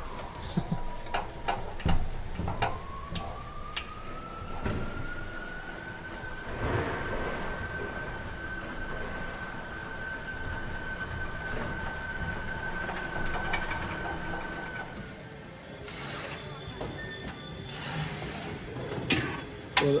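A steady high whine that slides up in pitch a few seconds in, holds for about ten seconds and then stops, with scattered clicks and knocks of metal hardware being handled.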